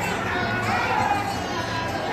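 Background voices of visitors, children among them, talking and calling out, with no clear words. A steady low hum runs underneath.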